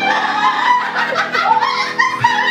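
A woman singing into a microphone over keyboard and acoustic guitar, with laughter mixed in.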